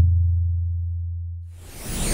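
Deep, low electronic tone from an edited-in hit sound effect, fading steadily over about a second and a half. Near the end a rising, sweeping whoosh effect swells in.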